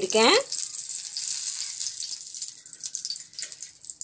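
A steady high hiss, with a voice finishing a word at the very start.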